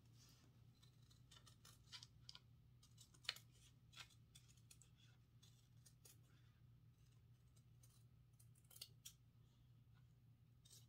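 Faint, irregular snips of scissors cutting through felt, a few short clicks every second or two.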